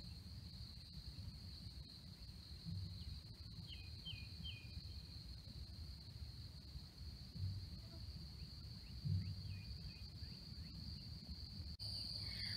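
Faint marsh ambience: a steady high-pitched insect trill, like crickets, over a low rumble with a few soft bumps. A few short high chirps come about three to four seconds in and again near nine seconds.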